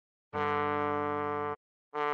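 A trombone tone plays a held melody note, D3 at slide position 4, for just over a second and stops cleanly. After a short gap the next note starts near the end.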